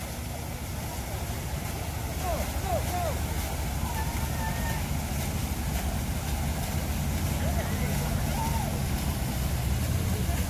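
A steady low outdoor rumble with a few faint, distant voices.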